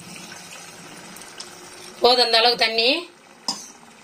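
Water poured from a vessel into a pot of thick chicken curry gravy, a steady pour lasting about two seconds, then a single short knock near the end.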